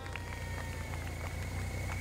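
Steady low engine hum from a vehicle moving alongside the runners, with a faint thin high whine over it and a few light ticks.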